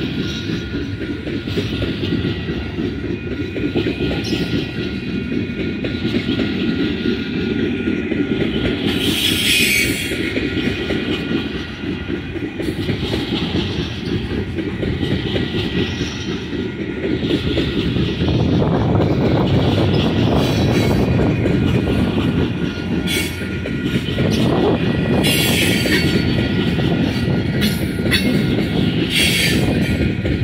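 Freight train gondola cars rolling past: a steady rumble and clatter of steel wheels on rail, louder in the second half, with brief high-pitched wheel squeals about ten seconds in and again near the end.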